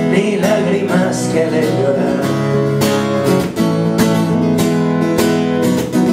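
Guitar strumming chords in a steady rhythm, played live in a solo song accompaniment between sung lines.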